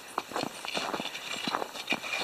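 Footsteps crunching in snow: an uneven run of short steps.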